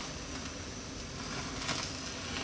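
Steady hiss of a gas hob burner's open flame with faint sizzling and a few small crackles from chicken and vegetable kebabs charring directly in it.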